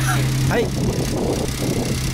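Suzuki Alto's small three-cylinder engine idling with a steady low hum.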